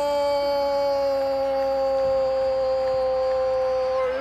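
A Spanish-language football commentator's drawn-out goal cry, the "gol" held as one long unbroken note that slowly sinks in pitch.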